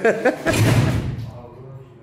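A single heavy thud about half a second in, a punch landing on a boxing arcade machine's punch ball, dying away over about half a second.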